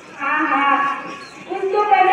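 A person's voice in two long, drawn-out calls, the second starting about halfway through and higher in pitch.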